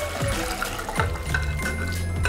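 Red wine mixture pouring from a glass bowl into a saucepan, a continuous splashing of liquid, over background music.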